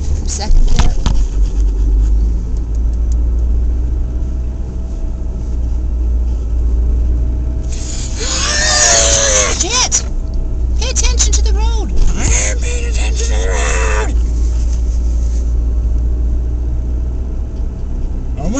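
Car engine and road rumble heard from inside the cabin, a steady low drone while the car is being driven. Loud voices cut in twice around the middle.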